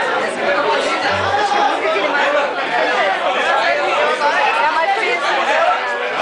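Many people chattering at once in a bar crowd, with a short low note, like a plucked bass string, about a second in.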